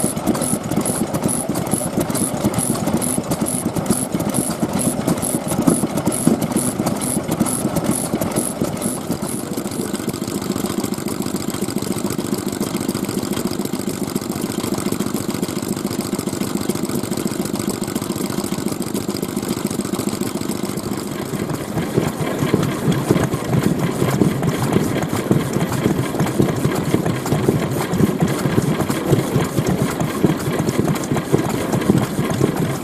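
Several old Japanese kerosene stationary engines (hatsudōki) running together in a steady mechanical din, with a fast regular high ticking in the first ten seconds. The mix of engine sound changes at about ten and again at about twenty-one seconds as different engines come to the fore.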